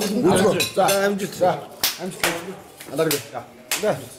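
Men's voices talking and exclaiming around a dining table, with three sharp clicks: two about two seconds in and one near the end.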